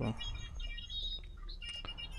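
Pause in the narration with a steady low hum, faint short high chirps, and two sharp computer-mouse clicks near the end as objects are selected.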